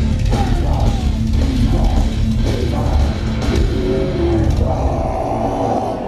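Loud live heavy metal from a band on stage, with distorted guitars, bass and drum kit, heard from within the audience.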